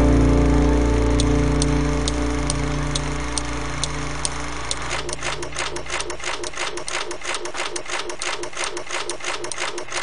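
The last chord of a hard rock song rings out and fades, with a sharp tick about twice a second. About halfway through, a rapid, even mechanical clatter of about six strokes a second takes over.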